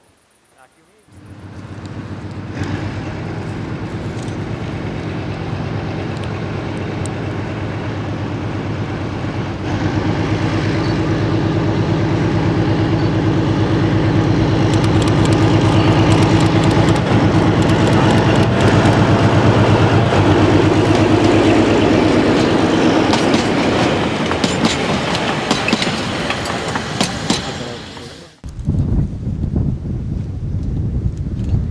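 ČSD T47 narrow-gauge diesel locomotive passing with its train: the engine's steady drone comes in about a second in and grows louder as it approaches, loudest as it goes by, with wheels clicking over the rail joints as the coaches pass. The sound cuts off suddenly near the end.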